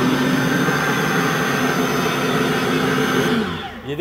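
Electric meat grinder's copper-wound motor running unloaded with a steady hum. Near the end it is switched off and its pitch falls as it spins down.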